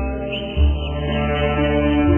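Slow Chinese meditation music for guzheng and xiao: long held notes over a deep low drone, with a new bass note coming in about half a second in.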